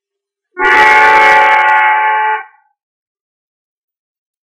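Hand harmonium sounding a loud chord of several reed notes at once, held for about two seconds; it starts abruptly about half a second in and cuts off.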